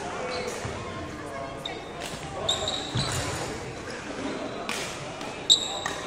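Athletic shoes squeaking on a wooden court floor: two short, high squeals about two and a half and five and a half seconds in, the second the loudest, with a dull thump of a footfall about three seconds in. Background voices run throughout.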